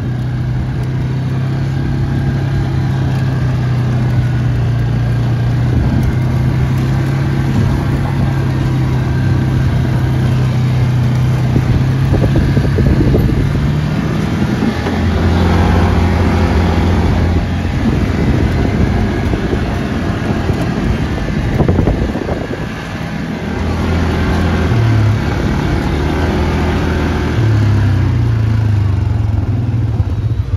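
Four-wheeler (ATV) engine running while being ridden over rough ground. It holds a steady note for about the first fourteen seconds, then its pitch shifts up and down as the throttle changes.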